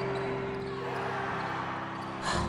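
Echoing arena sounds of a basketball game: a ball bouncing and crowd cheering in a large hall, over a steady held tone.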